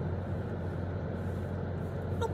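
Steady low hum inside a car's cabin with the engine running.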